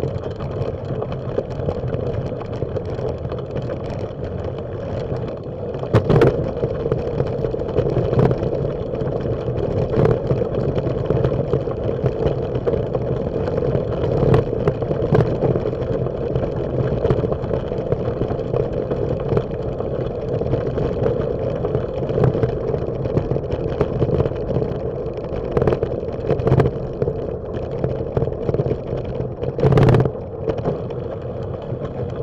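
Bicycle rolling over a gravel path and a wooden boardwalk, heard through a bike-mounted camera: a steady rolling rumble with scattered sharp knocks as the bike jolts over bumps.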